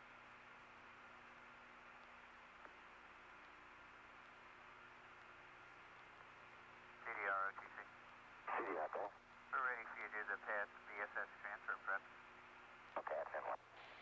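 Faint radio voice chatter over a thin, telephone-like communications link. It comes in short bursts starting about halfway in, over steady tape hiss and a low hum.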